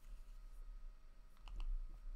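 Two quick, faint clicks about a second and a half in, from a computer control being pressed to advance a lecture slide, over a quiet room hum.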